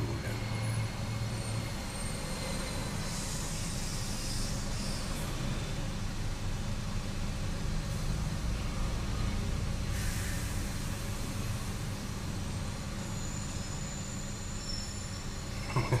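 Steady low background rumble, with brief hisses about three to five seconds in and again around ten seconds.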